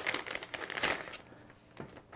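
Thin clear plastic bag crinkling as a handgun is pulled out of it; the crinkling stops a little over a second in, and a light tap follows near the end.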